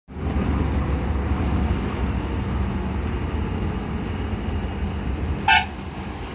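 Steady road and engine rumble of a moving vehicle, heard from on board, with a short vehicle horn toot near the end.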